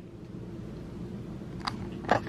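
Quiet room tone: a steady low hum, with a faint short click near the end.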